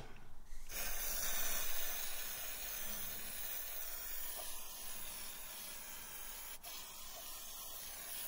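Aerosol brake cleaner sprayed in a continuous jet onto a new rear brake disc and caliper: a steady hiss that starts about a second in and grows a little fainter toward the end.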